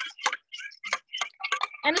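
Light, irregular clicking of metal kitchen utensils against each other and against a small saucepan, with a word of speech near the end.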